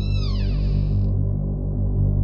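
Ominous background score: a steady low synthesizer drone, with a high shimmering effect that glides downward and fades out in the first second.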